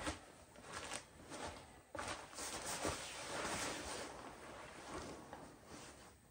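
Down blankets and an inflatable nylon sleeping pad rustling and crinkling as a person lies down on the pad and pulls the covers over himself. There are a few soft knocks, and the rustling is busiest in the middle.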